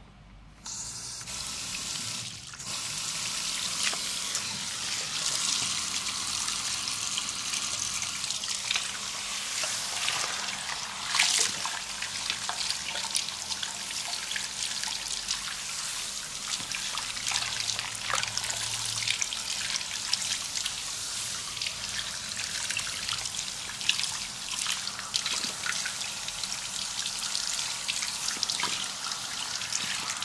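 Water from a backwash sink's handheld sprayer running steadily over a man's lathered, shaved head and splashing into the basin with scattered drips, as the lather is rinsed off. It starts about a second in.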